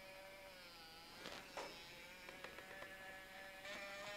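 Small DC gear motor running at 9 volts, driving a 3D-printed PLA mechanism: a faint, steady whine whose pitch wavers slightly. A couple of faint clicks about a second and a half in.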